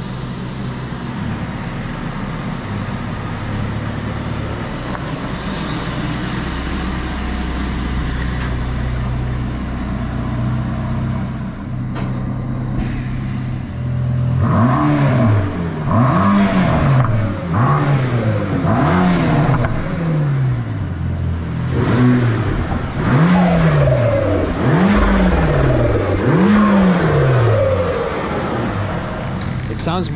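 Mercedes-AMG GT Black Series twin-turbo V8 running on a chassis dyno: held at a steady speed with the rollers turning, then from about halfway revved up and let back down about eight times in a row, each rev rising and falling over about a second. The run is part of breaking in the brand-new engine, kept short of full load.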